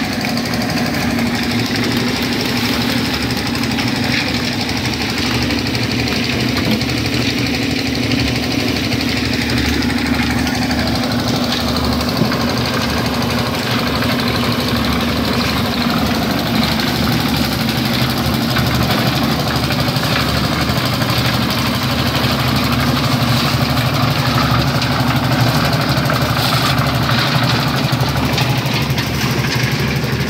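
Engine-driven concrete machinery on a building site, running steadily with a constant hum, growing a little louder in the last third.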